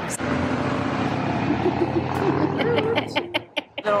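A road vehicle going past, its engine and tyre noise steady for about three seconds and then dropping away, with a few spoken words near the end.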